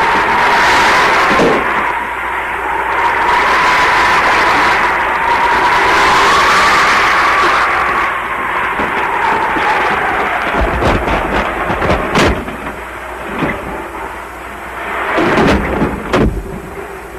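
Film storm effects: wind howling with a wavering whistle. Deep thunder rumbles and cracks come about eleven and twelve seconds in, and again near the end.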